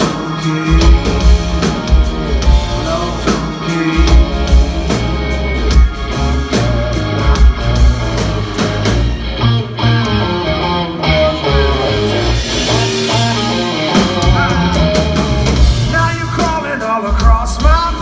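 Live rock band playing: electric guitar over bass guitar and drum kit, loud and steady. The lead vocal comes back in near the end.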